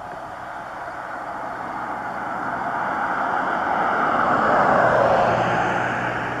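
A vehicle passing on the road, its tyre and engine noise growing steadily louder to a peak about five seconds in, then starting to fade.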